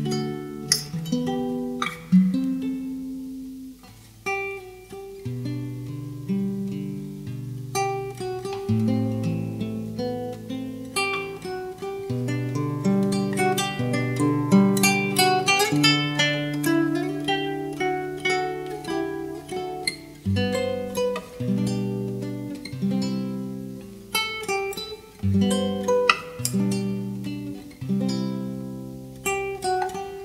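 Solo classical guitar fingerpicked, playing the chords and melody of a hymn arrangement, with held bass notes under plucked upper notes.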